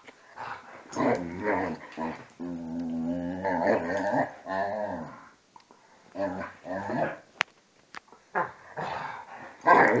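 A Hungarian vizsla and a German shorthaired pointer growling at each other while play-fighting, in short bursts with one long growl a few seconds in. A sharp click comes about seven seconds in.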